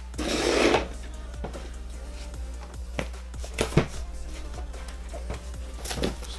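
Background music, with cardboard boxes being handled: a brief rustling scrape at the start, then a few light knocks about three to four seconds in.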